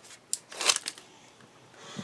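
A few brief rustles and taps of a sheet of paper being picked up and handled, the strongest about three-quarters of a second in, then a faint rustle near the end.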